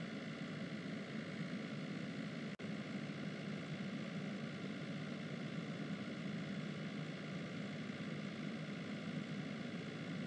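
Steady low drone of a car cabin in motion: engine and road noise heard from inside the car, with a momentary dropout about two and a half seconds in.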